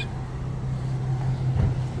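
A steady low hum with no speech over it.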